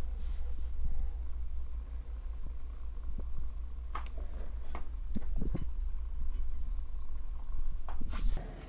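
A steady low hum with a few soft clicks and taps scattered through the middle, the sound of handling while the chain is filmed up close.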